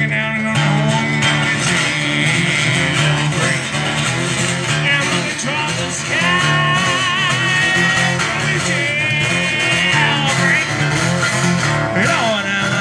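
A man singing over a steadily strummed acoustic guitar, a solo acoustic blues-rock song played live. About halfway through he holds a long note with vibrato.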